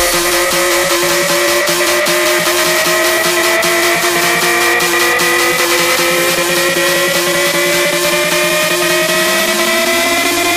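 Electronic dance music build-up: a synth riser climbing slowly and steadily in pitch over a held steady note, with fast ticking percussion on top; a lower tone also sweeps upward near the end.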